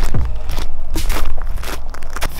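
Footsteps of hard-soled shoes crunching on gravel, in uneven strides, over a steady low rumble.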